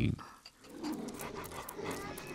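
The last syllable of a male narrator's voice right at the start, then an animal's quiet, low panting breaths.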